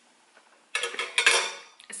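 A metal fork clinking and scraping against a disposable takeout container as salad is picked up: a quick cluster of clicks and scrapes lasting about a second, starting a little under a second in.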